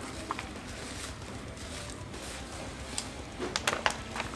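Low room noise with small handling sounds, then a quick run of sharp clicks and crackles near the end as a plastic water bottle is picked up and squeezed to drink.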